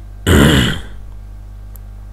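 A man clearing his throat once, briefly, over a steady low electrical hum.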